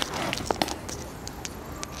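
A few scattered clicks and knocks of inline skates on a paved sidewalk as a beginner skater loses her balance and drops down to sit on the ground.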